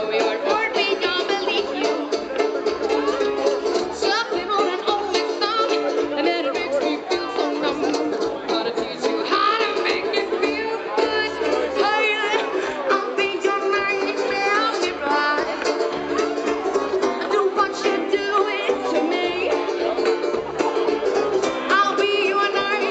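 A live folk-rock band playing an upbeat song, with a plucked banjo, a bass balalaika and a drum kit carrying the music, heard from the crowd through a camera microphone.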